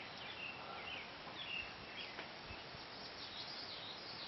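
Faint birdsong: scattered short chirps and whistles from wild birds, over a steady outdoor background hiss.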